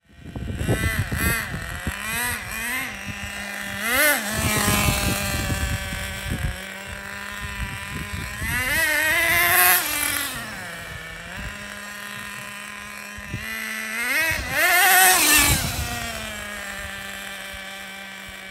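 Traxxas Nitro Rustler's Pro 15 two-stroke nitro engine idling and revving hard several times, its pitch climbing and falling with each burst of throttle. The biggest runs come about nine and fifteen seconds in, with steady idle between.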